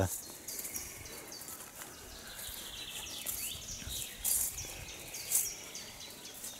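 Small birds chirping again and again over a steady outdoor background, with a warbling phrase about halfway through and a couple of louder chirps near the end.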